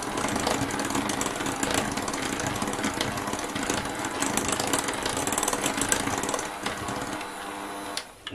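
Electric hand mixer running steadily at low speed, its beaters churning butter into a beaten egg and sugar mixture in a glass bowl; the motor hum eases a little near the end.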